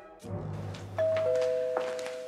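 Two-tone doorbell chime: a high note about a second in, then a lower note a quarter second later, both ringing on steadily.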